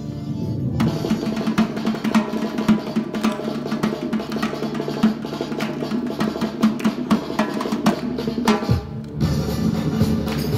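Large Caucasian double-headed drum beaten in a fast, driving dance rhythm. The strokes start a moment in, break off briefly near the end and then resume.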